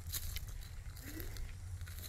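Low rumble with a few faint clicks and crackles on a handheld phone's microphone, the noise of the phone being held and moved during a pause in speech.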